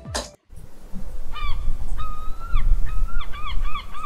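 A flock of geese honking: a few separate calls, then a quick run of honks about three a second, over a low rumble.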